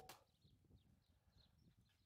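Near silence in an open-air setting, with a few faint, short bird chirps.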